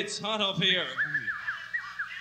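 A person's loud warbling vocal cry with a wavering, bending pitch, followed about a second in by a quick string of short, high chirping tones.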